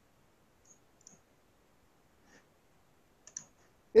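Near silence broken by a few faint, brief clicks, about four spread across the pause.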